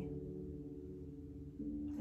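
Soft background music holding sustained low notes, with a new chord coming in about one and a half seconds in.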